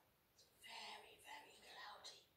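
A woman whispering a few short, breathy words from about half a second in.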